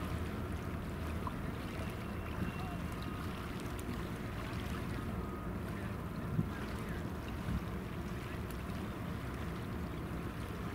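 Steady low rumble of a distant tugboat's diesel engine carried across the water, with one brief knock about six seconds in.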